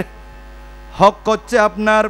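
Steady electrical mains hum from an amplified microphone and public-address chain, made up of many even tones. About a second in, a man's amplified voice comes back over it.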